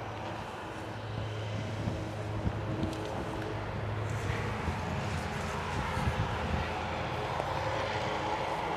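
A steady, low engine drone at a distance, growing slightly louder over the few seconds.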